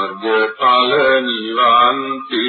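A single unaccompanied voice chanting in long held, slightly wavering notes, in a few phrases with brief breaks between them.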